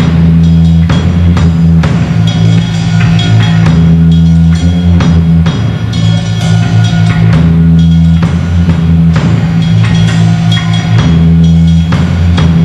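Heavy metal band playing loud and live, with a drum kit and bass drum hitting steadily over a heavy, sustained low end of bass and guitars.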